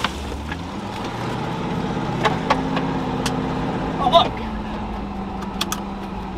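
V8 engine of a Land Rover Discovery 1 running at low speed, heard from inside the cab while driving over gravel. Its note climbs a little, then drops back about four seconds in, with a few sharp clicks scattered through.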